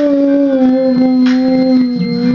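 A young girl singing one long held note into a handheld microphone, the pitch sagging slightly as she sustains it.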